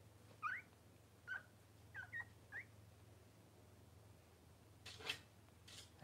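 Newborn Cavalier King Charles Spaniel puppies giving five short, high, rising squeaks in the first three seconds. Near the end come two brief rustles, all over a faint steady hum.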